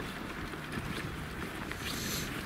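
Steady crunching and rumbling of a baby stroller's wheels and footsteps on a packed-snow path.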